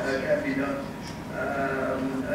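Speech: a person talking through a conference microphone system in a large hall.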